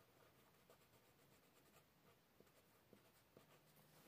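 Faint scratching of a pen on paper as a signature is written, with small ticks of the pen tip.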